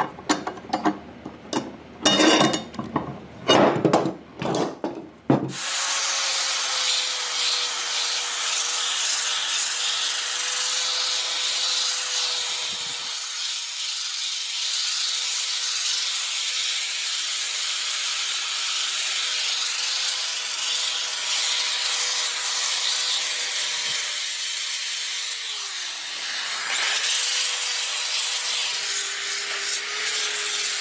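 A few irregular hand-tool scraping strokes on a wooden guitar body, then a corded drill with a sanding disc sanding the old finish off the guitar body, a steady rasp over the motor's whine. Near the end the motor's pitch dips briefly and recovers.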